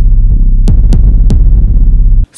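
Electronic background music: a deep, evenly pulsing synth bass, with a quick run of four sharp percussive hits about a second in.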